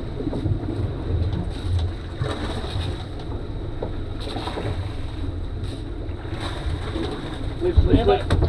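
A boat's outboard motors running steadily, a low rumble under wind and water noise, with faint voices.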